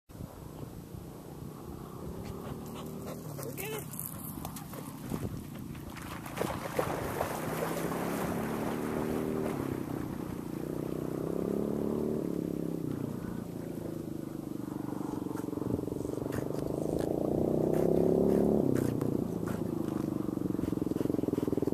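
An engine droning steadily, its pitch slowly rising and falling and growing louder near the end. It runs over a low rush of wind and a few knocks on the microphone.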